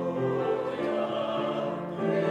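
Church choir singing, holding long chords that change every half second or so.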